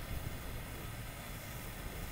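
Steady hiss of a lit propane torch held at the gasifier's vent nozzle, with a low rumble underneath.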